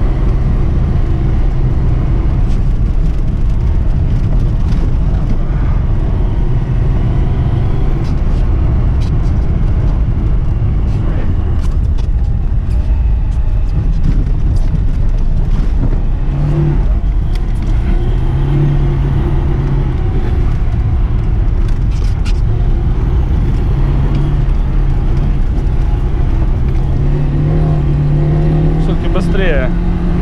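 Classic Lada Zhiguli engine and road noise heard from inside the cabin, driven hard on a rough, potholed snow track. The engine note rises and falls with the throttle and climbs in pitch over the last few seconds, under a steady rumble with scattered knocks from the body and suspension over bumps.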